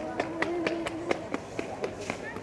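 Quick footsteps clicking on paving, about four a second, with a brief steady hum over the first second.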